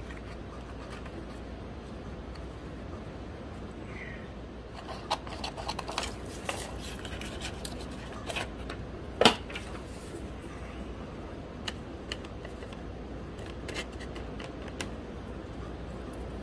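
Scissors snipping small scraps of paper: a run of short snips about five to seven seconds in, one sharper click a couple of seconds later, then scattered light snips and paper handling, over a steady low hum.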